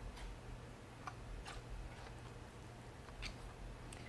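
Quiet room tone with a low steady hum and a few faint scattered clicks from a hardcover picture book being handled and opened.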